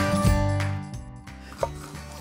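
A short music sting that fades out within the first second, then a single knife chop on a bamboo cutting board about one and a half seconds in, cutting a green pepper.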